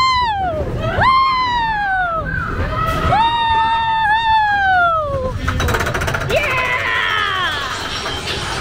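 Riders on a mine-train roller coaster screaming: several short high-pitched whoops that rise and fall, then one long held scream about three seconds in, over the train's steady rumble. About five and a half seconds in there is a rapid clatter, and then several voices scream together.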